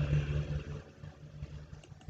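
Quiet background acoustic guitar music with a faint click near the end.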